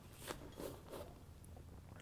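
Faint rustling with a few soft, short knocks from a person moving about at a weight bench.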